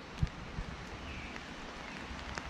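Steady hiss of rain falling on woodland, with a short low thump just after the start.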